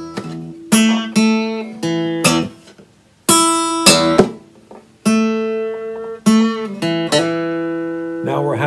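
Steel-string acoustic guitar playing a single-note blues lick in E in standard tuning. Picked notes, some in quick pairs, each left ringing, with a short near-silent pause about three seconds in.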